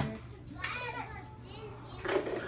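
A toddler's high-pitched babbling and squealing, with a sharp click right at the start.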